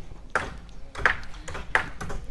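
Hammer driving nails into a timber roof frame: three sharp, ringing blows, evenly spaced about two-thirds of a second apart.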